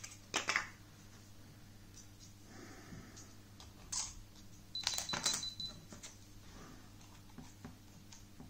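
Small plastic clicks and taps from a memory card being pushed into the battery and card compartment of a Canon PowerShot G7 X Mark II compact camera. There is one click just after the start, another about four seconds in, and a short run of clicks about five seconds in.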